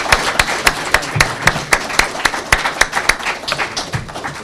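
Audience applause, a dense run of sharp hand claps that thins out near the end.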